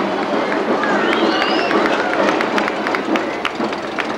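Street parade crowd on an old VHS camcorder soundtrack: many voices talking and calling out at once, with scattered sharp clicks and a high rising call about a second in.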